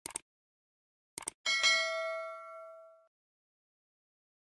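Subscribe-animation sound effect: two short clicks, two more about a second later, then a bright bell ding that rings on with several tones and fades out over about a second and a half.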